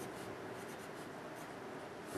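A wooden Dixon Ticonderoga pencil writing on paper, faint strokes as short letters are written.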